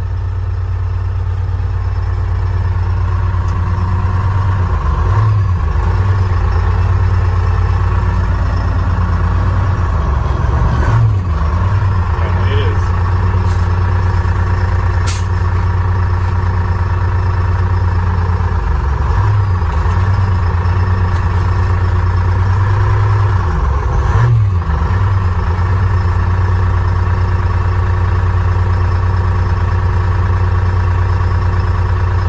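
Detroit Diesel two-stroke diesel engine running steadily, heard from inside the truck's cab. Its note dips briefly a few times.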